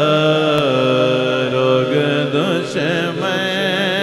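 Male naat singer drawing out a long, wavering melismatic phrase into a microphone over a steady low drone accompaniment.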